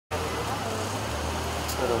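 Street ambience: a steady low rumble of road traffic and car engines, with faint voices of people near the end.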